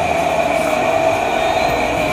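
A steady, even hum with a constant tone.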